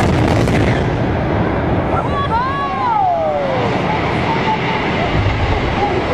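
Loud, continuous rumble of a high-rise tower block collapsing in an explosive demolition. About two seconds in, a person's voice calls out in one long falling 'whoa' over the rumble.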